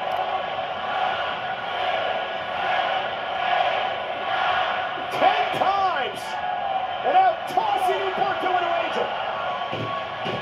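Arena crowd cheering, with whoops and shouts rising about halfway through, heard through a television's speaker.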